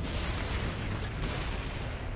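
Battle sound effects from the anime's soundtrack: a loud, rumbling blast of noise like explosions and gunfire, heaviest in the first second and a half and easing off after.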